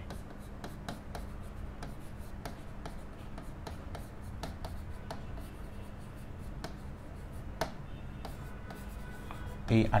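A marker writing on a writing board: a run of light scratches and clicks as letters are drawn, with one sharper tap a little before the end, over a steady low hum.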